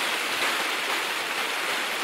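Shallow creek rushing over rocks: a steady running-water rush with white water churning through the channel.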